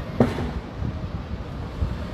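Wind buffeting the phone's microphone, a steady low noise, with a brief vocal sound just after the start.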